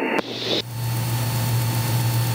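Cabin noise of a Mooney M20K in cruise flight: the turbocharged piston engine and propeller give a steady low drone under an even rush of air, after a brief hiss at the start.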